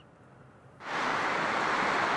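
Near silence, then about a second in a steady, even hiss starts abruptly and holds level: the noisy sound track of security camera footage.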